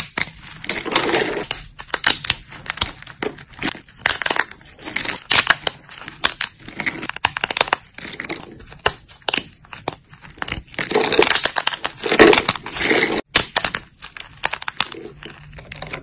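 Dry soap plates crunching and snapping as fingers break and crumble them into small pieces: a dense run of sharp snaps and crackles, loudest about eleven to thirteen seconds in.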